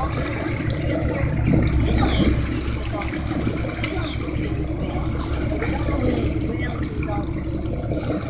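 Boat under way: a steady low engine drone with water rushing and splashing along the hull.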